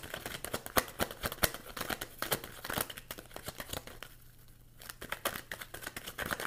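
A tarot deck being shuffled by hand: a quick, irregular run of card snaps and rustles that eases off briefly about four seconds in, then picks up again.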